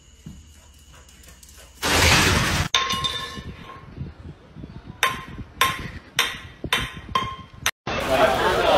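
A short, loud burst of noise about two seconds in. Then a metal can knocking against a concrete floor five times, about twice a second, each knock with a brief ring.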